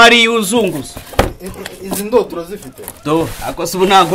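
A man's voice talking, broken by a sharp knock about a second in and a lighter one about two seconds in, from a cardboard box and its packed speaker set being handled.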